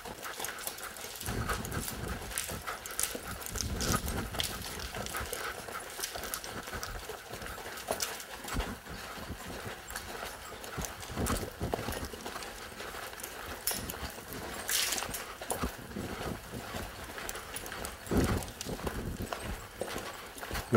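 A ridden horse's hoofbeats: a long run of soft, irregular hoof strikes on arena ground as it keeps moving forward.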